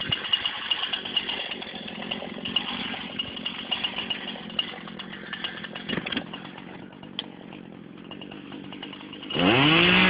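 Two-stroke Husqvarna 240 chainsaw running at idle for most of the stretch, then revved hard near the end, its pitch sagging and wavering as it bites into the wood.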